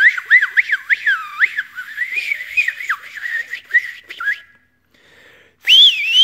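A man's loud whistle made with the tongue and lips, no fingers, warbling rapidly up and down in pitch for about four seconds. After a short pause, near the end, comes a quick whistle that sweeps up, dips and sweeps up again.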